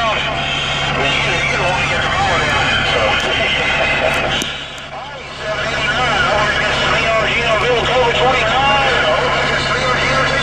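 Voices coming in over a Superstar SS-158EDX CB radio on channel 28, with a steady hum and static under them. The talk drops out briefly about halfway through, after a few clicks, then resumes.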